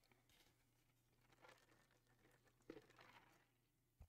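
Near silence, with a few very faint brief noises.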